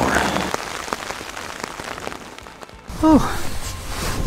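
Rain pattering on tent fabric, a steady hiss with scattered drop ticks that slowly fades.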